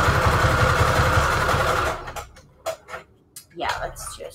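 Computerized sewing machine stitching a straight stitch through paper, a fast even needle rhythm over the motor's whine, which stops suddenly about halfway through. A few light clicks follow.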